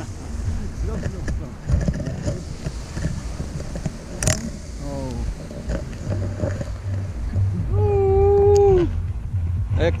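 Wind buffeting an action camera's microphone in a steady low rumble, with a short falling call about halfway and a long, steady-pitched call from a person about eight seconds in, the loudest sound here.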